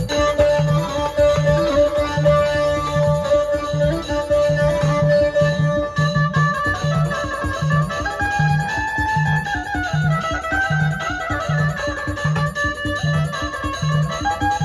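Dhumal band playing: a steady drum beat, about two strokes a second, under a plucked-string melody that moves up and down in pitch.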